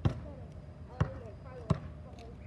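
A basketball bouncing on pavement: three bounces, unevenly spaced, the last two about a second and then under a second apart.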